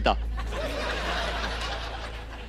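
A studio audience laughing together, a steady wash of laughter that dies away near the end.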